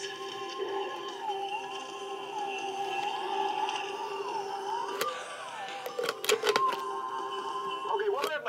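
Music playing from an iPhone's small speaker set into the neck of a plastic Coke bottle used as an improvised amplifier; the sound is thin, with no bass, and the bottle barely makes it any louder. A click about five seconds in, and a few more clicks a second later.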